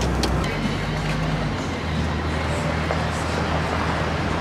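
A car driving slowly on town streets, heard from inside the cabin: a steady mix of engine and road noise.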